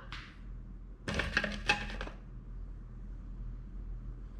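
Stainless steel nuts clinking against each other inside a slip ring cover as a hand rummages through them to draw one out: a quick run of sharp metallic clinks about a second in, lasting about a second.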